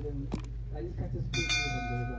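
Subscribe-animation sound effects: a single mouse click, then about a second later a bright bell chime that rings on for about a second as the notification bell is pressed.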